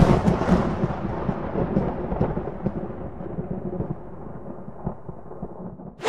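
Intro sound effect: the rumbling, crackling tail of a thunder-like crash, slowly dying away over several seconds.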